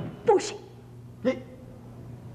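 A person's voice making two short wordless sounds about a second apart. The first is louder and falls in pitch; the second is brief.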